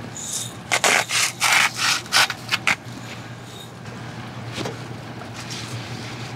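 Spatula scraping and stirring raw kale leaves in a non-stick frying pan: a quick run of about eight scrapes and rustles that stops before the halfway mark, over a steady low hum.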